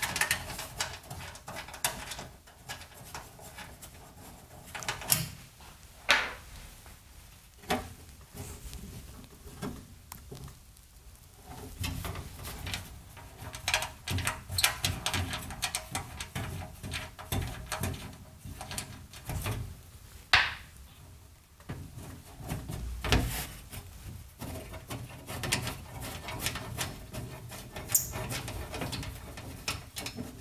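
Handling noise from removing the thumb-screwed back access panel of an old electronics cabinet: irregular clicks, scrapes and rubbing, with a few sharper knocks scattered through, busiest in the second half.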